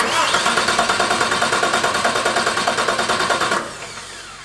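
Electric starter motor cranking a diesel engine under load, with a fast, even pulse from the engine turning over. It cuts in suddenly, runs for about three and a half seconds, then is released and winds down.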